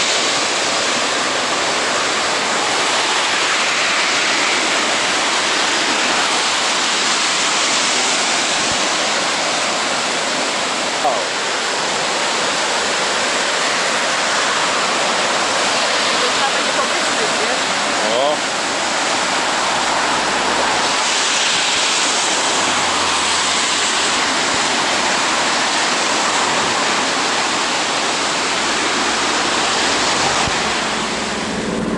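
The Lütschine, a mountain river swollen in flood, rushing loudly and steadily over its rapids. Two brief knocks come through, about 11 and 18 seconds in.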